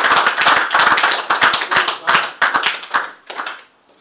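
A group of people applauding, the clapping thinning out and stopping about three and a half seconds in.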